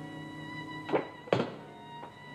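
Two heavy thuds about half a second apart, the second louder, over soft violin music.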